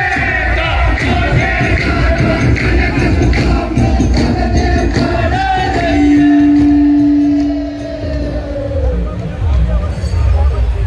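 Singing amplified through a loudspeaker system, with crowd noise under it; about six seconds in, a long steady note is held for around two seconds.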